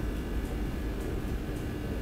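Steady low background hum and hiss with no distinct events: room tone.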